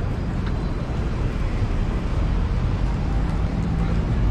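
Steady low rumble of wind buffeting the camera's microphone.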